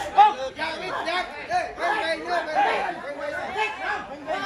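Many voices talking over one another: crowd chatter around a boxing ring.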